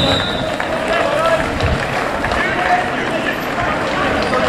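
Several people's voices calling out and talking across an open football ground, over a steady background hiss of outdoor noise.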